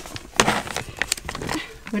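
A plastic bag of cat treats crinkling as a hand rustles and reaches into it: a string of short, crackly rustles.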